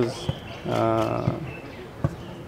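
A man's drawn-out hesitation sound, one level 'eee' held for about half a second in the middle.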